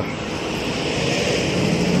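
Steady street noise of traffic and wind on the phone's microphone, with a low engine hum coming in near the end.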